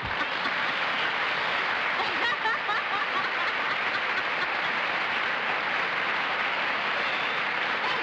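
Studio audience applauding steadily, with a few voices laughing through it.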